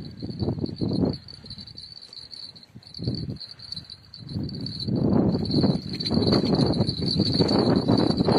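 Rumbling handling noise from a phone microphone being moved about, patchy at first and heavy and continuous over the second half, over a steady high-pitched whine.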